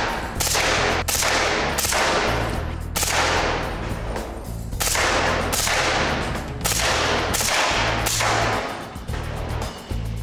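Suppressed Sig MCX rifle in .300 Blackout firing subsonic rounds: single shots in quick, uneven succession, about one to two a second, with a pause of over a second about halfway through.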